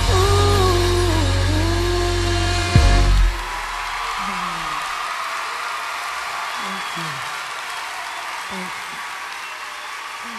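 The closing bars of a live soul ballad: a held, bending melodic line over heavy bass that stops abruptly about three seconds in. A live audience then applauds and cheers, with scattered voices rising above the clapping.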